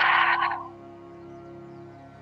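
A long exhale sighed out through the mouth, a breathy rush that fades out within the first second, over soft, steady ambient background music.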